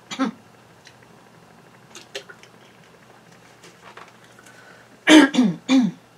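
A woman coughing and clearing her throat: a short cough at the start, then two loud, harsh coughs about five seconds in, her throat dry and playing up. Faint clicks of a plastic water bottle being handled come in between.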